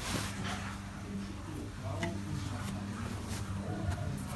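A steady low hum with faint voices in the background, and a brief rustle right at the start.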